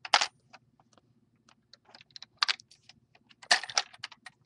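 Lego-brick gumball machine being worked by hand: sharp plastic clicks and rattles of its mechanism and balls, in three clusters (at the start, about halfway through and near the end) with small clicks between.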